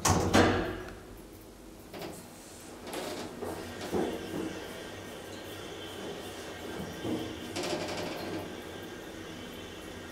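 KONE hydraulic elevator car travelling down between floors, with a steady faint running whine that sets in about three seconds in and a few knocks before it.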